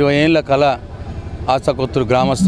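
A man speaking to press microphones in two short phrases, with a steady low rumble underneath.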